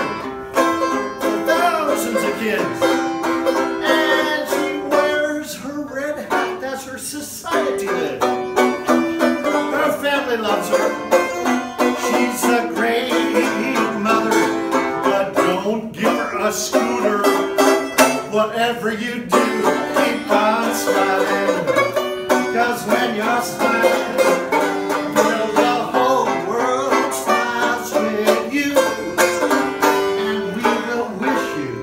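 Banjo played solo, an unbroken run of quickly plucked and strummed notes.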